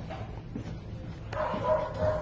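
Dog whining, a steady-pitched whine in the last half-second or so, after a faint knock.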